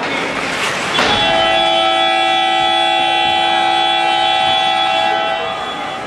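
Ice hockey arena horn sounding one long, steady blast of several tones at once. It starts about a second in and stops shortly before the end.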